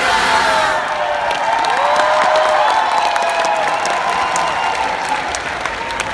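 Audience applauding at the end of a stage performance, the clapping steady throughout, with cheering shouts rising and falling over it.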